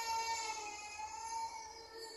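A long wailing cry held on one note, falling slightly in pitch and dying away near the end.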